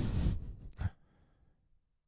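A man's breathy sigh lasting about half a second, followed by the short spoken word "nice" and then near silence.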